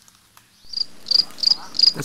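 An insect chirping in a steady rhythm, short high chirps about three a second, starting under a second in.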